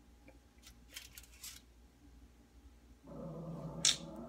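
A few faint scratchy clicks, then near the end a dog's low, rough growl lasting about a second, a reaction to something it senses outside.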